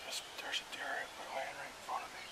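A person whispering several short, breathy phrases.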